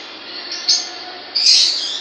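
Lovebirds calling with short, shrill chirps: a brief one about a second in, then a louder, longer call near the end.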